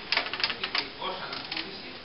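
A quick run of sharp clicks in the first second, with a man's voice speaking.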